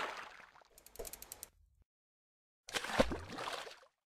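Animated-intro sound effects with a watery, splashy character: a soft swoosh at the start, a few light clicks about a second in, and a second, louder splashy swoosh about three seconds in.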